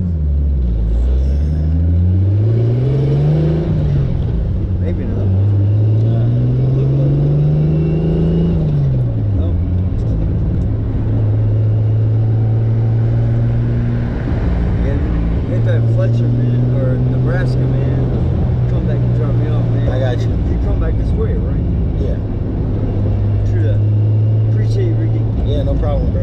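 Turbocharged 2JZ-GTE inline-six of a 1996 Lexus SC300, heard from inside the cabin. It pulls up through two gears in the first several seconds, with a shift between the rising pulls. It then drops back and runs at a steady cruise, with one short break about halfway.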